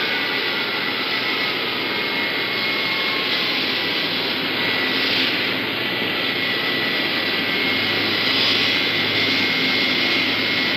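Jet airliner engines running on an airport apron: a steady rushing noise with a high, steady whine, and a second whine falling in pitch over the first few seconds.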